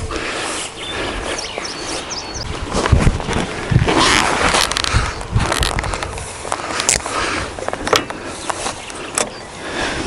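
Rustling with scattered knocks and scrapes, with no engine running.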